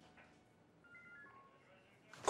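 Near silence, with a few faint short beeping tones at different pitches about a second in.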